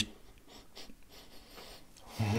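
Faint sniffing as a man smells an open jar of face cream held up to his nose: a few short, soft sniffs.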